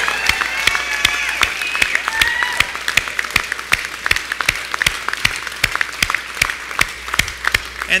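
Crowd applause, with sharp, close claps standing out from the general clapping; it slowly dies down toward the end.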